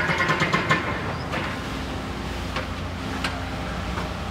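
High-reach demolition excavator running with a steady low engine hum while its jaws break up the building. A quick run of sharp cracks in the first second, then a few single cracks, as debris snaps and breaks.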